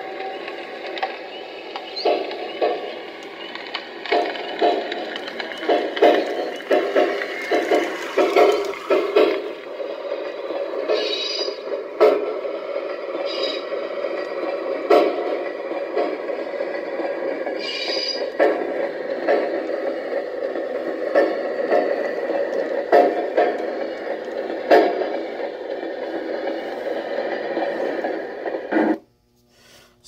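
Model railroad sound car's speaker playing recorded clickety-clack of wheels over rail joints as the car is rolled, the pace following the car's speed. Two brief wheel screeches come partway through. The sound cuts off suddenly about a second before the end.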